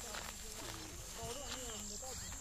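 Faint voices of a group of men talking and calling out to one another as they walk.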